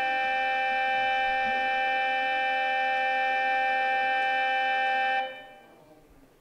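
A loud, steady electronic tone of several pitches sounding together, held for about five seconds and then dying away: a school's electronic class-change bell.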